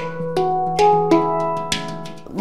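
Steel handpan played with the fingers: about five notes struck in turn, each ringing on with a long sustain over a low held note.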